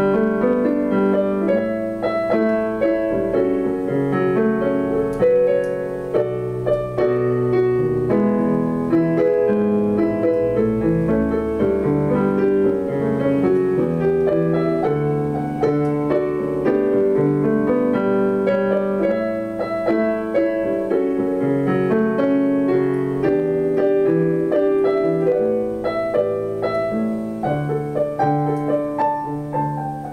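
A digital piano played solo, with sustained chords under a melody line running without a break.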